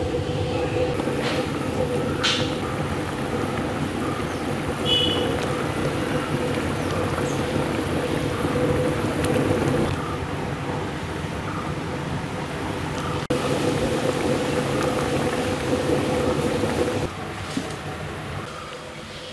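Steady rushing noise with a faint constant hum from a stove burner heating a large aluminium pot of fish curry gravy. The noise drops a second or so before the end.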